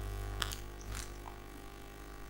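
Three short, faint clicks from a computer keyboard and mouse, the first about half a second in and the loudest. They sit over a steady low electrical hum.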